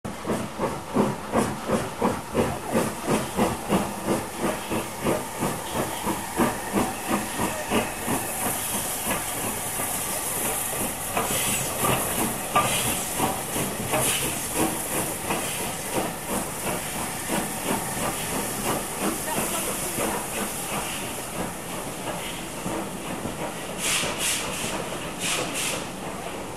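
LMS Stanier Class 5 4-6-0 (Black 5) steam locomotive working a train away from the station: exhaust chuffs at about two a second, quickening and blending into a steady steam hiss as it passes. A run of sharp clicks comes near the end as the carriages go by.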